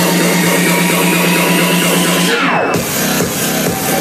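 Loud electronic dance music played live at a club DJ set, heard from the crowd. A rising sweep builds for about two seconds, then a fast falling sweep about two and a half seconds in gives way to a beat with heavier bass.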